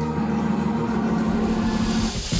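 Live band music: a low chord held steady as a sustained drone, with no drum beat under it.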